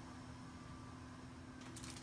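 Quiet room tone with a faint steady hum through a pause in speech, and a few faint soft clicks near the end.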